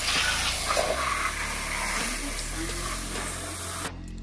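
Garden hose spray nozzle shooting a steady jet of water onto rubber floor mats, rinsing off the scrubbed-in cleaner and dirt. The spray cuts off suddenly near the end.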